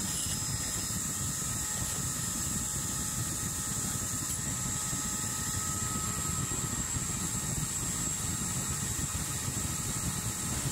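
Furnace burner running with a steady, even roar while it heats a cookie sheet of black-sand sulfides for roasting.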